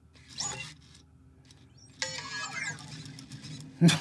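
Anki Vector robot's synthesized electronic chirps: a short burst of sliding tones, then about two seconds in a longer run of gliding chirps that fades out.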